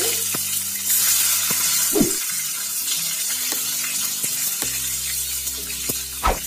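Halved brinjals (eggplant) frying in hot oil in a pan, a steady sizzle with scattered small pops of spattering oil, one sharper pop about two seconds in.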